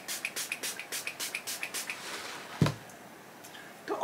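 Fine-mist pump spray bottle of makeup-remover mist being pumped quickly onto the face: a fast run of short spritzes, about five a second, for around two seconds. A single short low thump follows a little past the middle.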